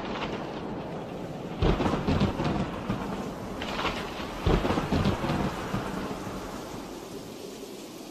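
Thunderstorm with steady rain and two loud thunderclaps that rumble on, about a second and a half and four and a half seconds in, the storm fading away near the end.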